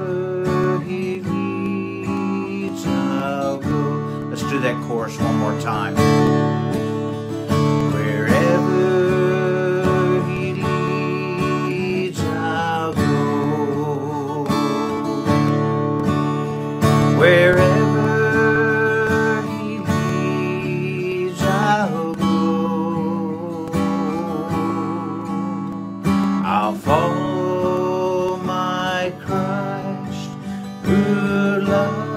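A man singing a hymn to his own strummed acoustic guitar, his voice rising into held notes with vibrato between strummed chords.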